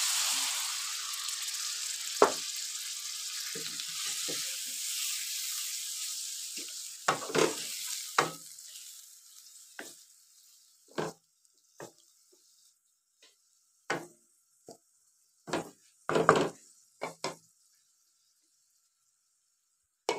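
Meat sizzles in hot rendered fat in a wok as a cup of ginger-garlic water goes in; the sizzle fades away over the first several seconds. A wooden spatula knocks and scrapes against the pan now and then while the meat is stirred.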